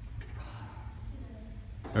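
Steady low room rumble with faint, distant voices; no distinct event.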